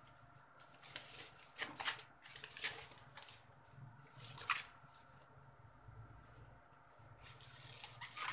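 Thin plastic wrapping bag crinkling and rustling as a boxed electronic unit is handled and slid out of it, in several short bursts.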